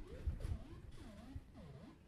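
Modular synthesizer voice played by an Intellijel Metropolis sequencer, repeating a pattern of notes at about two a second, each swooping up and down in pitch. The pattern is quantized to the major scale just chosen on the sequencer.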